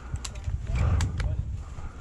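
Footsteps through dry brush with several sharp twig snaps, over a low rumble of wind buffeting the microphone.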